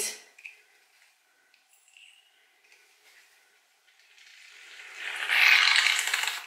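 Aerosol styling mousse can hissing as foam is pressed out, starting about four seconds in and growing louder; the can is old and nearly empty.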